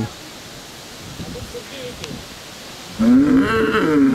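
A bull bellowing: one long, loud call starting about three seconds in. The cattle are bellowing at the smell of the offal and blood left where an animal was slaughtered.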